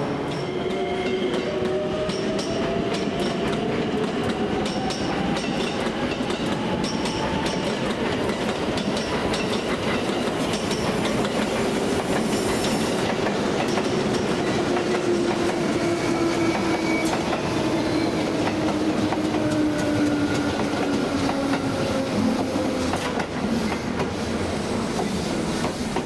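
JR West 283 series limited express train pulling into the platform and slowing to a stop. Rolling wheel and rail noise is overlaid by whining tones that fall steadily in pitch as it slows, most clearly in the second half.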